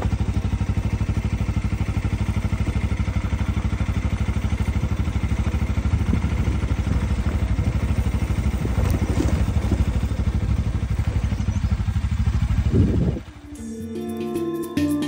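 Motorcycle engine running steadily while riding along a dirt road, a fast, even beat of engine pulses. Music starts near the end.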